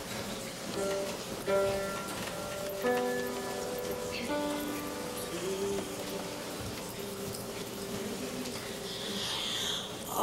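A slow instrumental melody of held, clear notes stepping from pitch to pitch, sometimes two notes sounding together.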